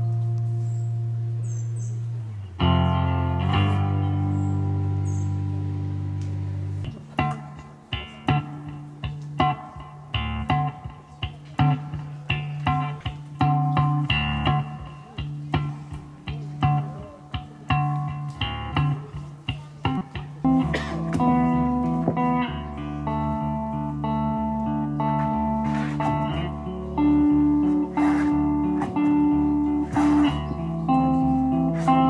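Electric guitar played live through an amplifier. It opens with long held chords, then from about seven seconds in changes to a rhythmic pattern of short picked notes, and later adds a repeating higher melodic figure.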